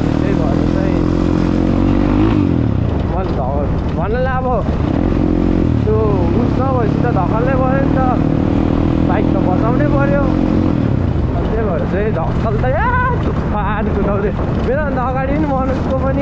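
Dirt bike engine running under way, its pitch climbing with the throttle, dropping about two seconds in, climbing again and falling back near eleven seconds.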